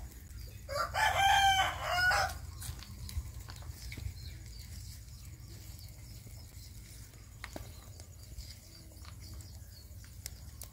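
A rooster crows once, about a second in, a single crow lasting about a second and a half. Faint bird chirps and a low steady rumble lie underneath.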